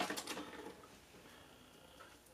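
Faint handling noises: small rustles and clicks of a Kinder Surprise plastic capsule and its paper insert in the fingers. They come in the first half second and then fade to quiet room tone.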